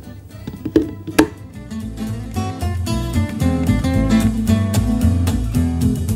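Acoustic guitar music, strummed, getting louder about two seconds in. Two sharp knocks come just before it, a little under a second in.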